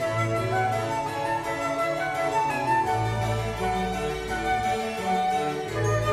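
Instrumental music playing over the PA, with sustained melodic notes over a bass line that changes every few seconds.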